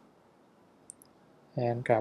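Two faint, quick clicks about a second in, from a stylus writing on a pen tablet; otherwise near-silent room tone, with a man's voice starting near the end.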